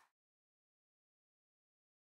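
Complete silence: the sound has faded out to nothing.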